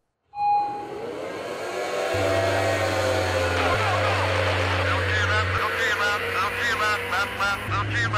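Formula 2 tunnel boats' outboard engines rising in pitch as they accelerate off the standing start, with the hiss of wind and water spray. A short tone sounds right at the start.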